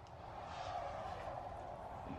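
Distant vehicle noise: a steady rumble and hiss that swells in over the first half second and holds.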